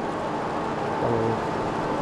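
Steady background noise with a faint, even whine running under it, typical of distant machinery or traffic.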